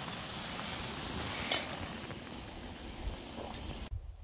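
Canister camp stove burner hissing steadily under a pot of scrambled eggs frying, with a light knock about a second and a half in. The sound cuts off abruptly just before the end.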